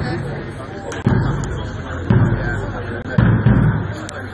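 Bass drum of a marching brass band beating time: four low thuds about a second apart, the last two close together, over crowd chatter.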